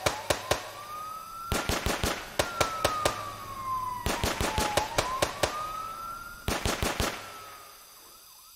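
Several bursts of rapid gunfire, quick volleys of shots, over a police siren that wails slowly up and down twice. It is a comic sound effect contradicting the promise of safety.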